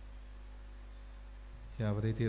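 Steady low electrical mains hum from a microphone and sound system during a pause in speech. A man's voice starts just before the end.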